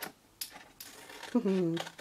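Small scissors snipping notches into card stock: a few sharp snips in the first second. About one and a half seconds in, a short burst of voice.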